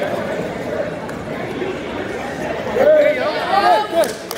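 Spectators in a gym chattering, then several voices shouting loudly for about a second near the end, reacting to a takedown attempt on the mat.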